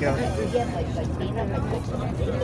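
A tour bus on the move, heard from inside the cabin: its engine and road noise make a steady low drone beneath people talking.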